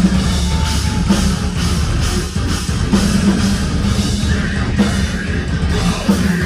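Progressive metalcore band playing live: electric guitars over a busy drum kit, loud and continuous.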